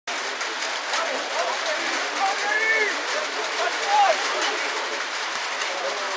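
Scattered, indistinct shouts from players and spectators at an outdoor football ground over a steady hiss.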